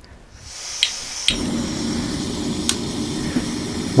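Gas hissing from a remote-feed canister stove burner as the valve is opened, then two clicks of a lighter. The burner catches about a second in and burns steadily with a low, even rushing noise.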